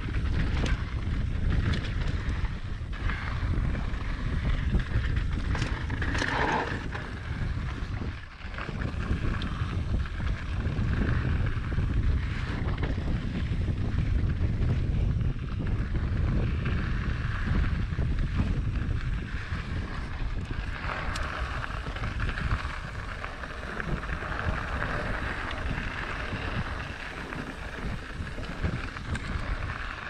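Wind rushing over a handlebar-mounted camera's microphone, with the rumble of a mountain bike's tyres and rattling of the bike over a rocky dirt trail on a fast descent. Short clicks and knocks come through the rumble now and then, and there is a brief dip about eight seconds in.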